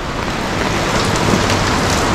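Steady rain pattering on an umbrella, mixed with the rush of a small river running full through a concrete channel.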